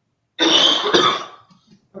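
A person coughing twice in quick succession, loud and close.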